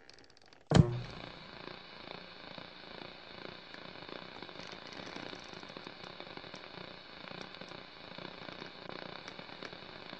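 A sudden loud hit less than a second in, followed by a steady crackling hiss with faint scattered ticks.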